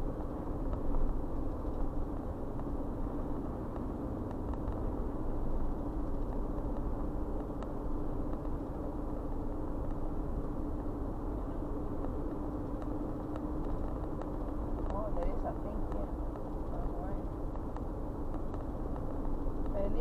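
Steady road and engine noise inside a car's cabin cruising at about 35 mph, with a steady low hum.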